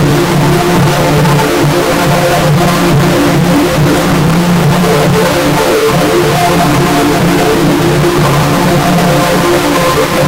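Loud, harsh, heavily distorted audio that runs without a break: a buzzing noise over several held low tones that shift in steps, like music mangled by sound effects.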